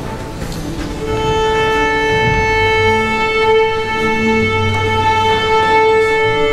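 String chamber orchestra playing: a chord dies away, and about a second in the strings take up a long held high note over lower parts that move beneath it.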